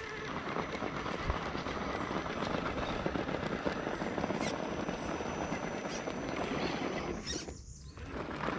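RC scale crawler truck crawling up a dirt and rock bank, its tires crunching and scrabbling over loose dirt and stones in a dense, crackly patter. A thin steady high whine runs underneath, and the sound briefly drops away near the end.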